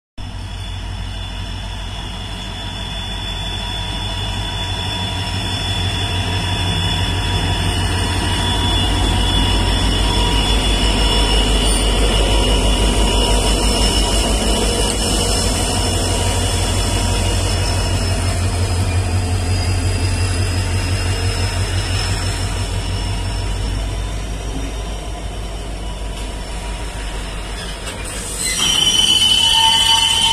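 Twin WDG4-class diesel-electric locomotives with EMD two-stroke engines running past, a heavy pulsing engine drone that swells to its loudest about halfway through as they go by and then eases as the goods wagons roll past. A high thin squeal breaks in near the end.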